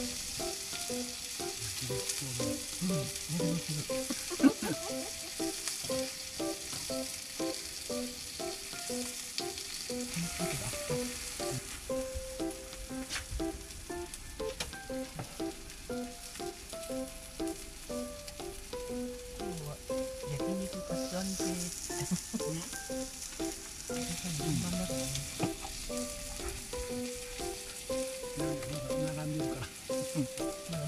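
Meat and vegetables sizzling on a round yakiniku grill pan, a steady frying hiss throughout, with one sharp click about four and a half seconds in.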